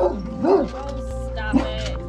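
A dog giving two short whining calls that rise and fall in pitch, over background music with steady held tones.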